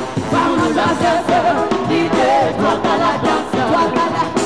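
Live band music with a lead singer and backing vocalists singing together over electric guitar, drums and keyboard.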